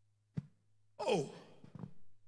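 A man's sigh into the microphone about a second in: a short voiced breath out that falls steeply in pitch, after a single sharp click from the handheld microphone just before it. A faint steady electrical hum runs underneath.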